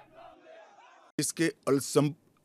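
A man speaking, starting about a second in after a brief faint pause.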